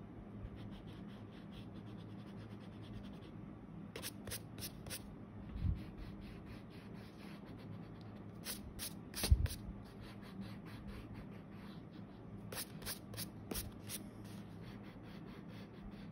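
A rubber eraser rubbed back and forth over pencil lines on paper, in short runs of quick strokes. Twice a dull thump stands out, louder than the rubbing.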